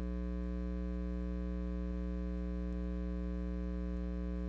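Steady electrical mains hum from the sound system: a constant low buzz with a stack of higher tones above it, with no change throughout.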